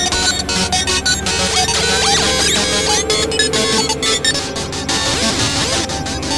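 Several music tracks layered over one another, making a dense, clashing electronic mix. Many short sweeping pitch glides repeat through it, and a steady held tone sounds through the middle.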